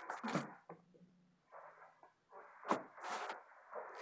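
Handling noise from a phone camera being picked up and repositioned: soft scattered rustles and light knocks, with one sharp click nearly three seconds in.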